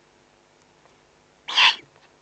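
Eurasian eagle-owl at the nest giving one short, raspy, hiss-like call about a second and a half in.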